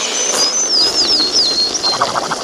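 Cartoon dizziness sound effect of tweeting birds: a quick string of short, high chirps, several sliding down in pitch, over a steady hiss.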